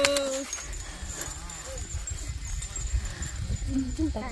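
A woman's voice holds a long drawn-out note that stops about half a second in. After it comes an irregular low rumble of wind on the microphone, with a few faint rustles.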